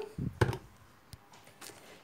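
Two light knocks about a quarter second apart, then near quiet with one faint click: plastic bottles and a jar being handled and set down on a countertop.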